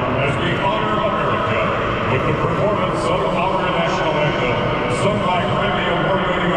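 Large stadium crowd chattering, a steady echoing din of many voices under a roof.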